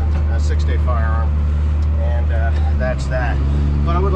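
Tractor engine running steadily under load, heard from inside the cab while towing a full lime spreader, a low, even drone. About three seconds in its pitch shifts slightly with a brief dip in loudness.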